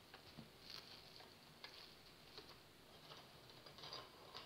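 Near silence with a handful of faint, irregular light taps and rustles: dry tea biscuits being set down one by one in a plastic-wrap-lined metal baking pan.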